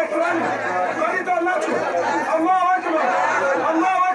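Speech: a man talking into a microphone, with other voices.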